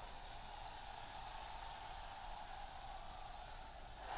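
Faint, steady background noise with no distinct event, the kind of hiss and hum left in a live speech feed between sentences.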